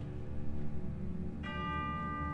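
Orchestra sustaining low chords, and about one and a half seconds in a tubular bell (chime) is struck and rings on over them.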